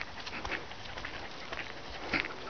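Footsteps and the paws of several dogs on leads crunching and pattering irregularly over a gravelly dirt track.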